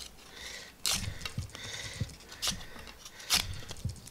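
Ganzo G7392-CF folding knife's blade carving shavings off a wooden stick: several sharp, short slicing strokes, the strongest about a second in, about two and a half seconds in and near the end.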